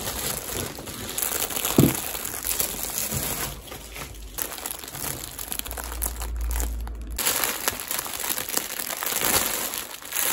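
Clear plastic packaging crinkling as wrapped items are handled, with a knock about two seconds in.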